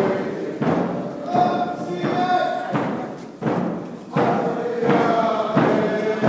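Group of voices singing a chant together over a steady drumbeat, about one and a half beats a second, keeping time for the dancers.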